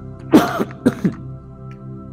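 A man clears his throat in two short, loud bursts about half a second apart, over soft, steady background music.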